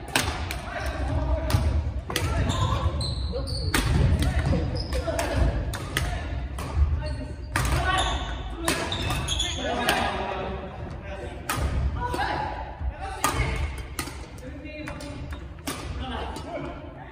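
Badminton rackets striking shuttlecocks in quick, irregular succession during a shuttle-feeding (knock) drill, each hit a sharp crack that echoes around a large gym hall.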